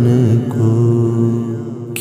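Male voice singing a noha (Urdu lament), holding one long, steady note at the end of a line and slowly fading toward the end.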